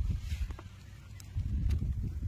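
Wind buffeting the microphone outdoors: an uneven low rumble that dips in the middle and picks up again, with a few faint clicks.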